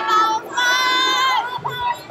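High-pitched shouting from young voices, several overlapping. The longest is a drawn-out call of about a second, heard over the crowd in a large hall at a taekwondo bout.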